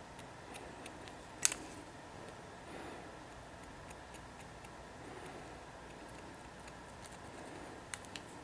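Haircutting shears snipping through wet hair, with quiet comb strokes between cuts. There is one sharp metallic click of the blades about a second and a half in.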